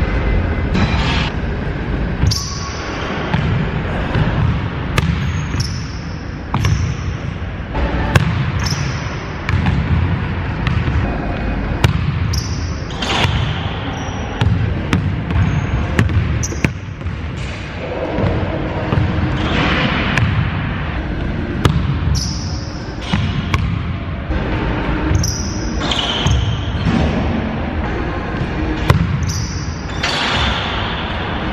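A basketball bouncing on a hardwood gym floor, with sharp irregular impacts echoing in a large hall over a continuous low background.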